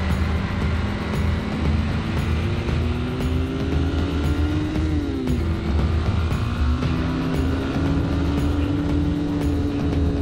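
Motorcycle engine pulling up through the revs, dropping in pitch at a gear change about five seconds in and then climbing again. Background music with a steady beat plays underneath.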